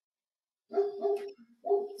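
A dog barking twice through a call microphone, two drawn-out barks about a second in and near the end.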